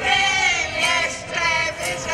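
A folk choir in traditional costume singing together, voices holding sustained notes in short phrases.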